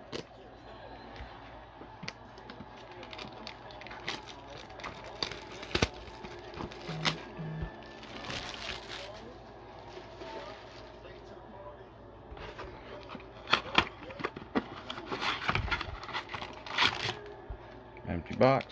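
Plastic shrink wrap cut with scissors and peeled off a cardboard trading-card box, crinkling and crackling in irregular clicks and rustles. Near the end the cardboard box flaps are pulled open.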